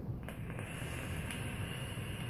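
A long draw on a sub-ohm vape: a faint, steady hiss of air pulled through the device as the coil fires, starting a moment in.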